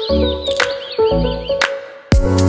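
Background music: sustained bass and mid notes with a sharp percussive strike about every half second, and high chirping glides over it in the first second.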